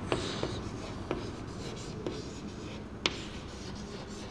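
Chalk writing on a blackboard: scratchy strokes with a few sharp taps of the chalk, the sharpest about three seconds in.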